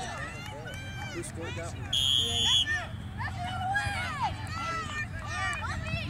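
Scattered shouts and calls of players and spectators at a youth soccer match, with one short, shrill referee's whistle blast about two seconds in.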